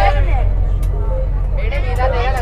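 Steady low rumble of a coach bus's engine heard inside the passenger cabin, with passengers' voices over it.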